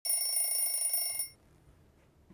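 An alarm ringing: a loud, shrill, rapidly fluttering ring that cuts off suddenly after a little over a second.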